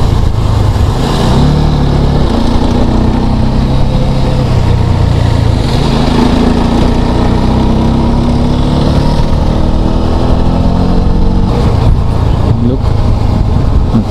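Honda Hornet motorcycle's single-cylinder engine running at road speed, its note rising and falling slowly with the throttle, with a break in the note about eleven and a half seconds in. Wind rushes steadily over the camera microphone.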